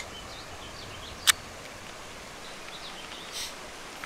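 Sharp metallic clicks from a Glock 19X pistol being handled to clear a first-round jam: one loud click about a second in and a softer one near the end. Steady outdoor background noise runs under them.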